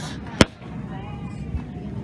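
A single sharp click about half a second in, over the background hum of a shop with faint distant voices.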